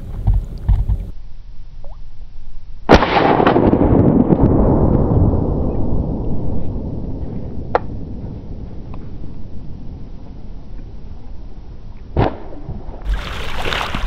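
A loud shotgun shot about three seconds in, fired at a duck flying overhead; its report trails off over several seconds. Two lighter, sharp cracks follow later.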